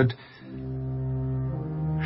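Background music: a low, held brass-like chord that comes in about half a second in and sustains steadily.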